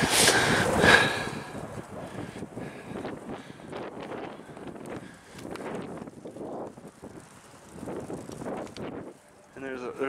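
Wind buffeting the microphone of a camera on a moving bicycle, loudest in the first second, then easing to fainter, uneven wind and road noise.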